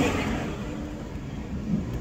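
Road and engine noise heard from inside a moving car's cabin: a steady low rumble that eases a little over the first second or so.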